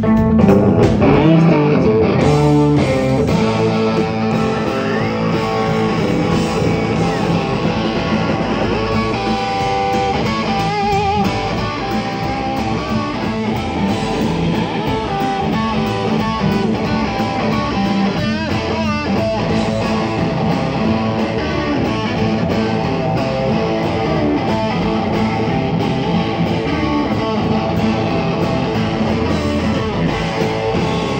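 Live blues band playing an instrumental stretch: electric guitars over bass guitar and drums, with bent, wavering guitar notes and no vocals.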